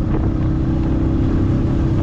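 Motorcycle running on the move, a steady low rumble mixed with wind on the microphone and a steady hum held throughout.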